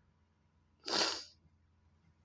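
A woman's single short sniff through the nose, about a second in. She is crying.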